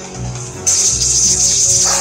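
Game music and sound effects from an augmented-reality card battle app: steady background music, with a sudden loud hissing effect sound starting about two-thirds of a second in and holding to the end.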